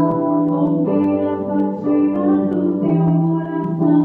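A woman singing a gospel song into a microphone in long held notes, accompanied by piano or keyboard.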